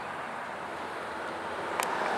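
Steady background hiss with no distinct source, and one short click near the end.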